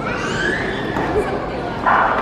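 A starter's gun signal sounds near the end as a short, loud burst that sends the hurdlers off the blocks. Before it, a high whining cry rises and falls over steady crowd noise.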